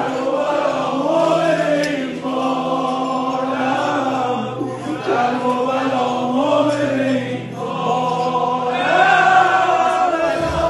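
Male voices singing a slow devotional song in praise of Imam Reza, in long held notes over a steady low drone.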